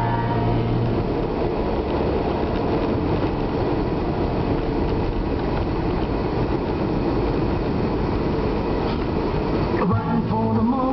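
Steady road and engine noise of a car driving, heard from inside the cabin, with most of it a low rumble. A song ends about a second in, and new music starts right at the end.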